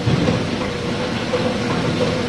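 Plastic injection moulding machine running with its take-out robot and conveyor: a steady mechanical drone with a faint constant hum.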